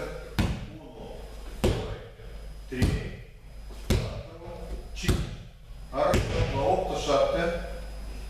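Children doing backward-rolling breakfalls on a martial-arts mat: six sharp slaps of hands and bodies hitting the mat, about one a second.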